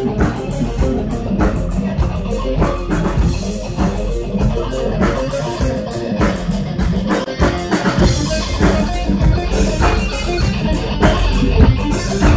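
Live rock band playing an instrumental passage without vocals: electric guitar over bass guitar and a drum kit, loud and steady throughout.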